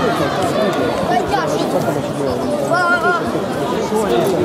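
Many overlapping voices of spectators and coaches talking and calling out in a sports hall. One high voice shouts out briefly about three seconds in.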